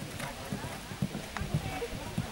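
Hoofbeats of a pony cantering on sand arena footing: a run of dull low thuds.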